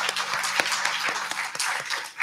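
Congregation applauding, a dense steady clapping that carries on just past the end of a musical piece.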